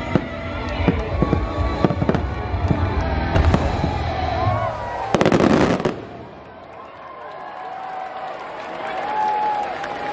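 Fireworks going off over the show's music soundtrack: a quick run of bangs, then a louder rush about five seconds in. After it the bangs thin out and the music carries on more quietly.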